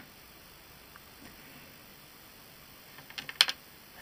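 Faint room noise, then a quick run of sharp clicks about three seconds in.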